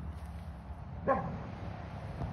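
A dog gives one short bark about a second in, falling in pitch, over a steady low hum.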